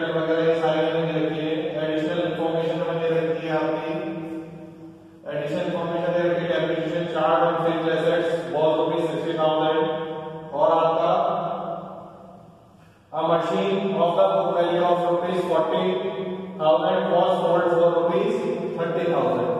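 A man speaking in a lecture room, with two short pauses about four and twelve seconds in.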